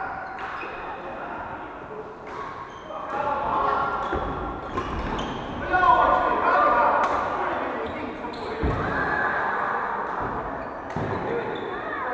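Badminton play in a large reverberant hall: repeated sharp cracks of rackets hitting shuttlecocks and shoes on the wooden court, under players' indistinct voices calling across the courts.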